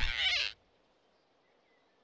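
Cartoon flying squirrel's startled cry as he is caught, cut off about half a second in, followed by faint forest ambience with a faint bird chirp near the end.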